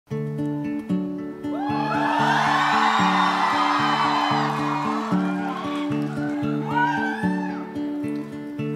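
Acoustic guitar playing a repeating chord pattern as a song's intro, with high whoops and cheers from the audience rising over it about a second and a half in and again near the end.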